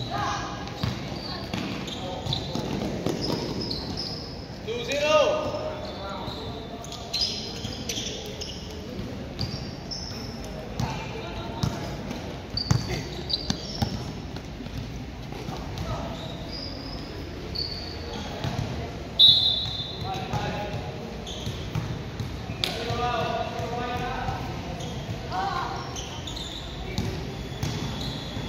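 Basketball being dribbled and bounced on an indoor court, with many short, high sneaker squeaks on the floor and players' shouts and calls.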